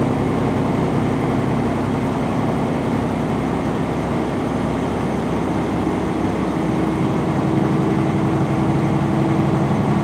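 A semi truck's diesel engine running steadily at highway speed, heard from inside the cab over constant road and tyre noise. Partway through, a new steady engine tone comes in.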